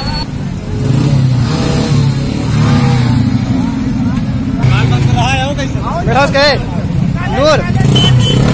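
Several small motorcycle engines idling together in a low, steady rumble. Loud shouting voices rise over it from about halfway through.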